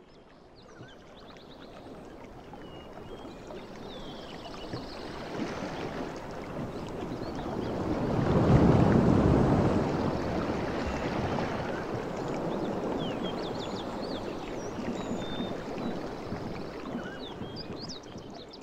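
Outdoor ambience: a steady rushing noise that fades in, swells to its loudest about halfway through and then holds, with short high chirps near the start and again near the end.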